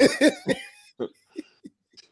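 A man laughing in short bursts that fade out over the first second and a half.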